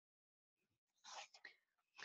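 Near silence, then a faint, low voice murmuring in the second half, just before speech resumes.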